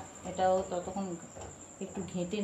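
A cricket's continuous high-pitched trill in the background, steady throughout, with a person speaking briefly about half a second in.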